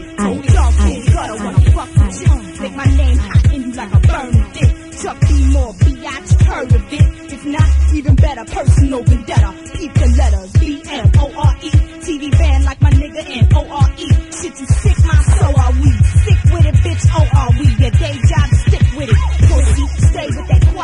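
Hip hop track from a DJ mixtape: rapping over a beat with a heavy bass kick. About fifteen seconds in, the beat changes to fast, closely packed bass hits.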